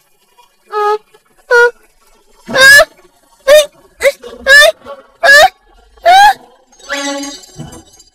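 A cartoon character's short, wavering wordless cries, about eight in a row, each a fraction of a second long.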